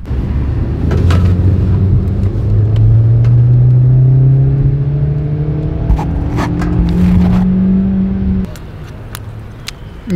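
Hyundai car's engine accelerating, heard from inside the cabin: the engine note climbs slowly and steadily in pitch, then cuts off suddenly well before the end, leaving quieter road noise.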